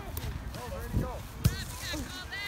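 Scattered shouting voices of players and spectators, over a steady wind rumble on the microphone. A sharp thump, the loudest sound, comes about one and a half seconds in.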